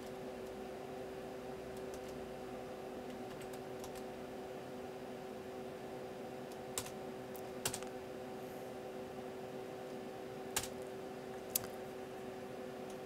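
Computer keyboard keys pressed one at a time, a few sharp separate clicks with gaps of a second or more between them, over a steady hum.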